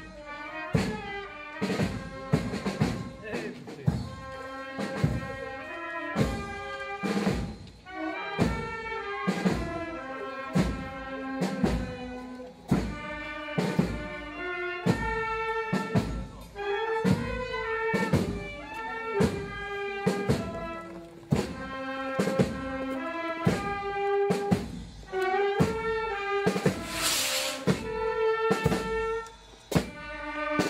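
A village street band playing a march: a melody on saxophone and brass over a steady bass drum beat, with a brief crash near the end.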